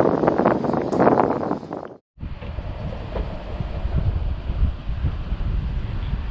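Wind buffeting the camera microphone: a loud, gusty rush for about two seconds, then a brief cut to silence, followed by a quieter, steady low wind rumble.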